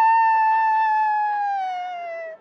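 A single high-pitched wail, like a held voice, sustained and slowly sliding lower in pitch as it fades toward the end.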